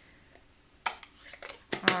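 Clear plastic stamping tools, an acrylic stamp block and a clear stamp, being handled on a table: a few sharp clicks and taps beginning about a second in, the loudest just before the end.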